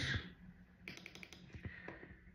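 Computer keyboard keys clicking faintly in short runs, about a second in and again near the end.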